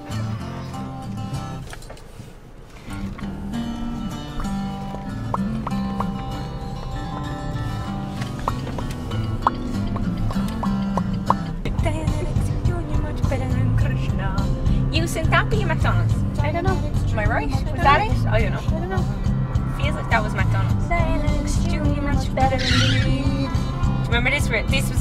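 Music playing on a car stereo inside a moving car's cabin, with voices over it. About halfway through, a low road rumble from the car grows louder and stays under the music.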